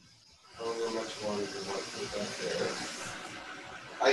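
Indistinct, muffled talking over a steady hiss, both starting about half a second in.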